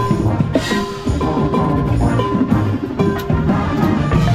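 Drum corps ensemble music played live: a steady stream of struck percussion notes over held pitched tones and a strong low bass, with a four-mallet marimba close by.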